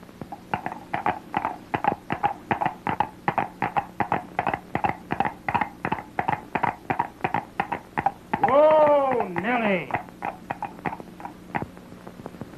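A dog yapping rapidly, about three or four barks a second, broken a little over eight seconds in by two drawn-out whines that rise and fall in pitch, then a few more yaps.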